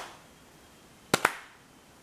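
Two sharp snaps about a tenth of a second apart, a little past a second in: tarot cards slapped down on a table.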